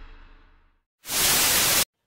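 Closing music fading out, then a short burst of white-noise static lasting under a second that cuts off abruptly: an edit transition sound effect between segments.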